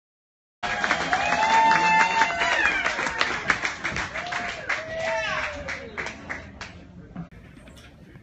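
Audience clapping and cheering, with whoops and shouts, loudest at first and dying away over several seconds.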